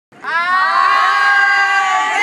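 A group of women's voices cheering together in one long, held shout, starting suddenly just after the beginning.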